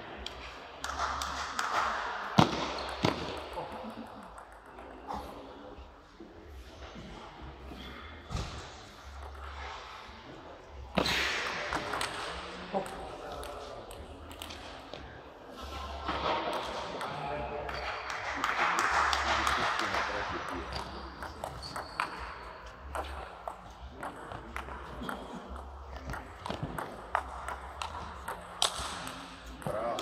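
Table tennis ball clicking off the rackets and the table in rallies, in sharp, irregular strokes, over the murmur of voices in the hall.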